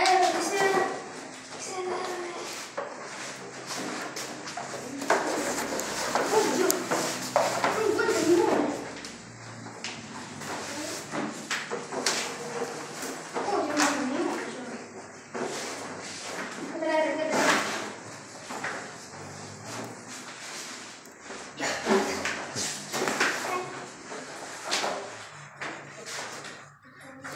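Children's voices talking and calling out over one another, mixed with frequent light clicks and knocks of plastic toy pieces and foam puzzle mats being handled.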